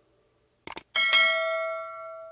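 Subscribe-button animation sound effect: a few quick mouse clicks, then a bell ding about a second in that rings on and fades away.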